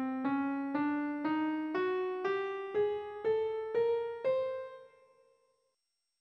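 A piano-like keyboard tone plays the nine-tone Zacrygic scale (scale 1999) upward one note at a time, about two notes a second: C, C♯, D, E♭, F♯, G, G♯, A, B♭ and the top C, an octave from middle C. The last note is held and dies away about five seconds in.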